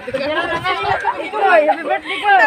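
Several people chatting at once, with indistinct voices overlapping.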